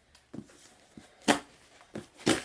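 Cardboard book mailer being handled and worked open by hand: a few short crackles of the cardboard, with one sharper snap a little past the middle.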